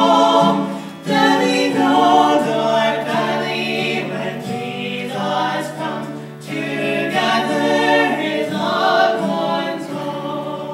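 A trio of two women and a man singing a gospel hymn in harmony, with the man strumming an acoustic guitar. The singing moves in phrases with short breaks between them.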